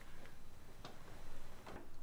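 A few faint, scattered clicks from someone working at a computer, over quiet room hiss.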